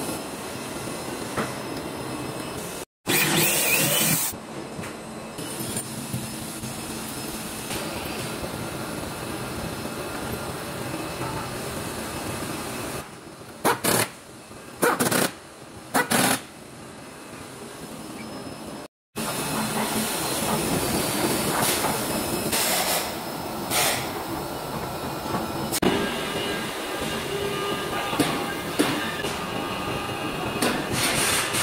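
Steady workshop machinery noise, broken by several short bursts of a power screwdriver driving screws, three of them close together in the middle. The sound cuts out abruptly twice.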